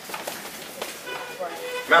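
Scattered footsteps and shoe scuffs of a group of line dancers stepping and kicking on a hard floor, with faint voices in the room, then a man starts speaking near the end.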